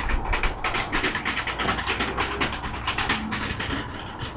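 Rapid, irregular mechanical clicking, several clicks a second, over a low steady rumble.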